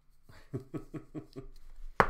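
A man laughing: a run of short pitched 'ha' pulses, about five a second, lasting about a second.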